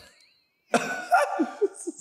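A woman bursting into hearty laughter about two-thirds of a second in: one loud outburst, then a run of short, choppy pulses of laughter.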